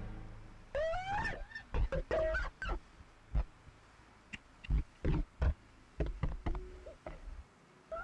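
Live improvised experimental rock thinning out to sparse, effects-processed squeals and upward pitch slides that sound animal-like, with a few low thumps and quiet gaps between them.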